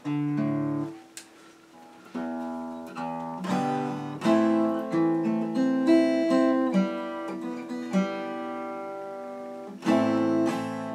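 Acoustic guitar played without singing: a strummed chord rings out and fades, and after a short pause chords and single notes are strummed and picked at an unhurried pace.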